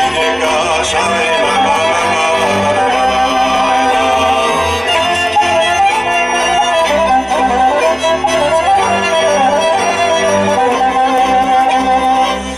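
Live Romanian folk music from a band: a continuous instrumental passage with a lively melody over a steady accompaniment.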